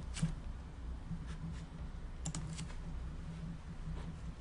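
A few faint, short clicks from working a computer, one pair and a quick cluster among them, over a steady low hum.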